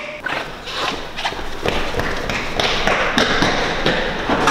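Running footsteps on a hard floor: a series of thuds and taps, about two to three a second.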